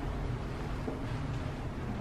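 Steady low background rumble of room noise, with no distinct event.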